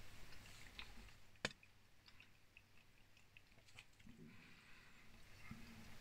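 Near silence with faint chewing, a few small soft ticks, and one sharp click about a second and a half in.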